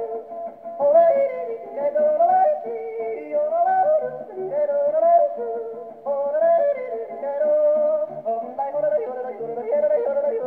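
Male yodeling with guitar accompaniment, played from a shellac 78 rpm record on a portable wind-up gramophone. The sound is narrow, with no deep bass or high treble, and a plucked guitar bass note falls about once a second under the yodel.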